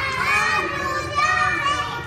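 Several children's voices, high-pitched, talking and calling out over one another.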